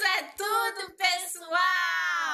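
A woman and a young boy singing together: three short sung phrases, then a held note starting near the end that sags slightly in pitch.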